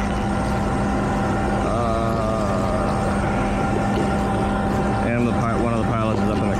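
Steady drone of a powered-up business jet's running power equipment, with constant hum tones under an even rushing noise. A voice is heard briefly about two seconds in and again near the end.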